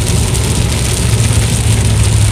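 Steady low rumble of a car driving along the road, heard from inside the cabin.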